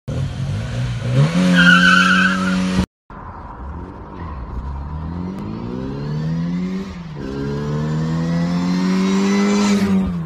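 Car engine revved hard at a launch with tyres squealing, held at high revs. After a brief cut to silence, a car engine accelerates through the gears, its pitch rising, with a gear change about seven seconds in and another at the end.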